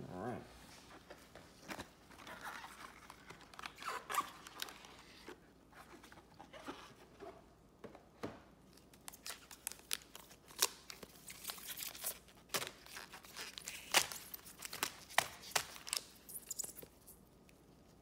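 Foil-wrapped trading card packs crinkling and crackling as a stack of them is pulled from the box, fanned through and handled with gloved hands. The crackles are irregular and come thickest in the second half.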